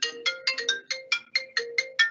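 Mobile phone ringtone ringing: a quick repeating run of short, bell-like notes, about six a second.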